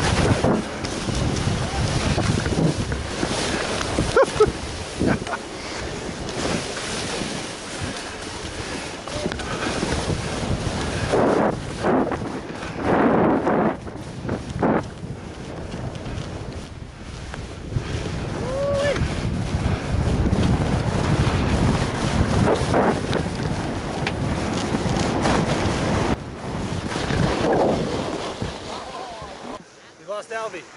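Wind rushing over the camera microphone while skiing downhill, with skis hissing and scraping through snow in louder surges as the skier turns.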